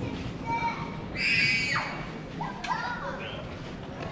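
A young child's high-pitched squeal about a second in, falling in pitch at its end, followed by shorter sing-song vocal sounds, over the background talk of other people.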